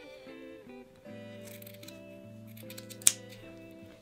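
Soft background music with sustained notes, over which steel scissors snip through loose-knit fabric, with one sharp snip about three seconds in.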